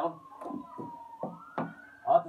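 A distant siren wailing: one thin tone falling slowly, then sweeping back up about a second and a quarter in.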